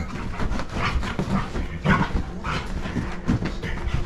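A dog charging and spinning around on a bed, its paws scrabbling and thudding irregularly on the mattress and rustling the sheets and pillows.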